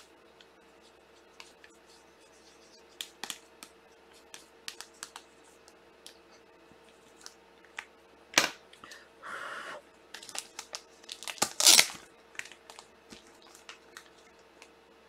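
Foil-wrapped trading-card pack being torn open and its wrapper crinkled, among small clicks and taps of cards being handled. A sharp rip comes about eight seconds in, then a short sliding rush, and the loudest burst of crinkling comes near the end.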